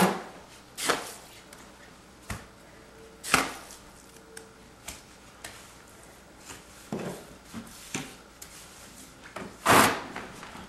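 Wet Type S mortar being spread and pressed over metal lath with a trowel: short, irregular scrapes and slaps, about ten in all, the loudest right at the start and near the end.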